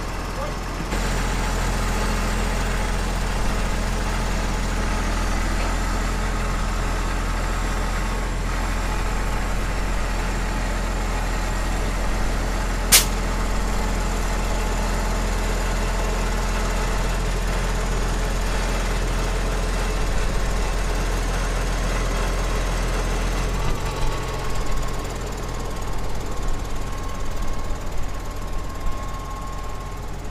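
Tractor diesel engine running at a steady, even speed, with one sharp click about halfway through. About 24 seconds in, its note changes and turns uneven.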